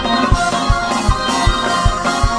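Fast gospel praise-break music: organ chords over a drum kit, the bass drum hitting on a steady beat between two and three times a second.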